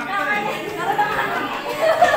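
Several people talking at once in a room: overlapping conversational chatter.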